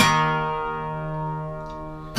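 Acoustic guitar chord strummed once and left to ring, fading slowly.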